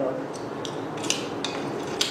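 About five light, sharp metallic clinks and ticks, as of small metal pieces knocking together or against a hard surface.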